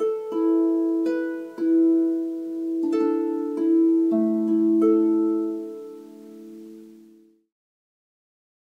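Double-strung harp played with the right hand alone: about eight single notes plucked slowly in a loose, unhurried rhythm, each left to ring and die away. The sound then cuts off suddenly shortly before the end.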